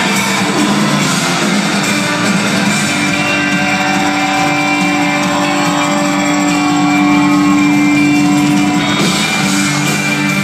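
Live rock band playing, electric guitars over drums, heard from the crowd in a large theatre hall. A chord is held for several seconds in the middle before the music changes near the end.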